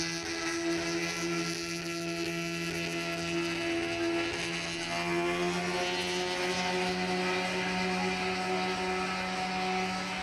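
Steady motor hum from a Slingshot reverse-bungee ride's machinery, with several clear tones. A little past halfway the pitch rises slightly and then holds.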